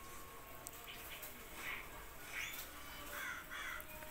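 A few faint, short animal calls over quiet room tone.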